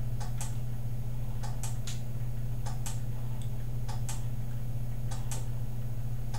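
Timer relay of a homemade bicycle-wheel inertial generator clicking in pairs about a fifth of a second apart, repeating about every 1.2 seconds: it switches the drive on for 0.2 s and then lets the wheel coast for a second. A steady low hum runs underneath.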